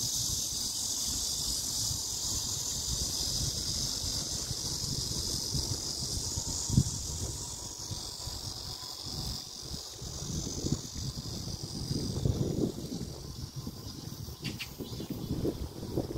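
A steady, high-pitched chorus of insects in the grass, fading after about halfway. Underneath, wind buffets and rumbles on the phone's microphone, gustier toward the end.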